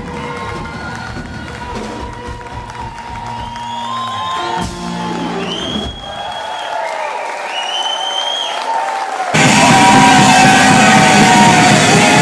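Live rock concert sound: the crowd cheers and whoops over quieter stage sound. About nine seconds in it cuts abruptly to a loud live rock band with electric guitar and singing.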